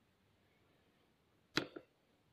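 A sharp click about one and a half seconds in, followed closely by a fainter second click, over a faint steady hiss.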